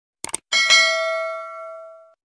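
Sound effect of a quick double mouse click, then about half a second in a bright bell ding that rings out and fades over about a second and a half: the click and notification-bell chime of a subscribe-button animation.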